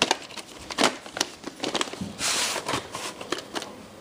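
A plastic VHS tape case being handled and turned over: a run of sharp clicks and taps, with a short rustling scrape a little past halfway.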